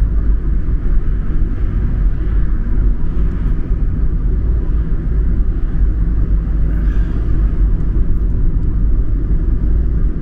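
A car driving at highway speed, heard from inside the cabin: a steady low rumble of tyre and engine noise.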